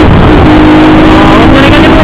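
Keeway Cafe Racer 152 motorcycle's single-cylinder engine running at a steady cruise, a constant hum under loud rushing noise from the ride.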